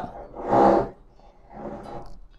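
A man's breathy vocal sound close to a microphone, lasting about half a second, followed by a fainter one near the end.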